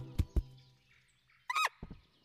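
A dropped nut knocking twice on the ground, then a cartoon chinchilla's short squeaky cry about one and a half seconds in, bending in pitch.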